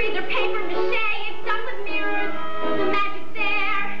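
A solo female voice singing a show-tune ballad over instrumental accompaniment, holding long notes with vibrato.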